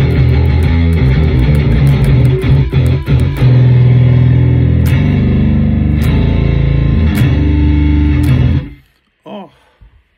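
Electric bass guitar played through the Growler bass plugin, heavily distorted. First comes a run of quick notes, then long held low notes, and the playing stops about a second before the end.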